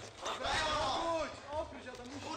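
Speech only: voices talking or calling out, with no other clear sound standing out.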